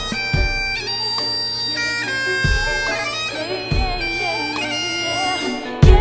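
Bagpipes playing a tune over a steady drone, with a few low thumps under it.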